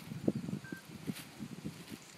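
Faint rustling and small irregular knocks of close movement and handling, with one short, faint, high peep about a third of the way in.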